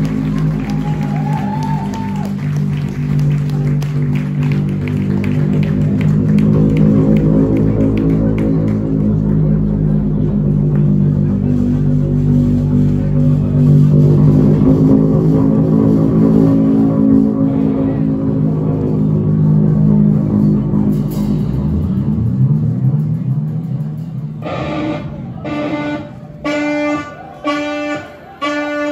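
Live band opening a jazz-punk song with electric guitar and bass holding a droning, swelling wall of sustained low notes. Near the end the drone drops away into short, clipped pitched notes repeated in a stop-start rhythm.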